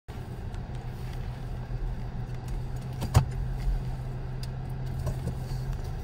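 Low, steady hum of a car's engine heard from inside the cabin as the car moves slowly out of a parking space, with one sharp click a little past halfway.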